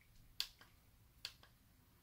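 Plastic remote-control buttons clicking as they are pressed, two clearer clicks a little under a second apart with a few fainter ones, against near silence.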